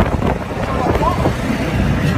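Steady low rumble on a handheld phone's microphone, with faint voices in the background.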